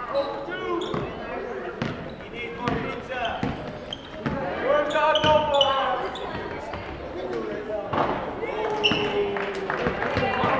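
A basketball bouncing on a hardwood gym floor during play, the strikes coming at irregular intervals. Players and spectators are calling out in the large gym.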